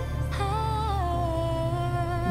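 A slow R&B-style pop song playing, a woman's voice singing a smooth held melody that slides down about a second in, over a steady bass.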